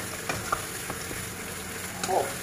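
Sliced apples sizzling in butter and brown sugar in a frying pan, stirred with a wooden spatula that taps and scrapes the pan a few times, mostly in the first second.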